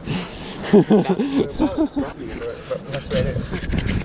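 A man talking and laughing, with a run of short chuckles about a second in.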